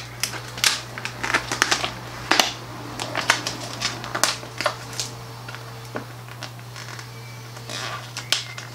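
Holographic iron-on vinyl sheet crinkling and crackling as it is handled and pulled apart, in irregular sharp crackles that come thick in the first half and thin out later.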